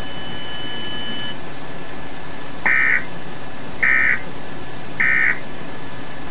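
Emergency Alert System end-of-message data bursts: three short, buzzy digital bursts about a second apart, marking the end of the alert, over a steady broadcast hiss.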